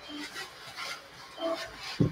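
Pastel pencil being sharpened by hand: a few short rasping strokes.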